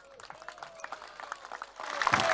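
Crowd applause: scattered hand claps that start sparse and build gradually.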